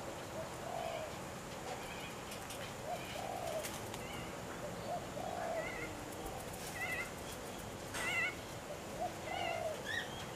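Birds calling in the background: short, low, coo-like notes every couple of seconds and, separately, brief warbled chirps higher up, over a steady outdoor hum.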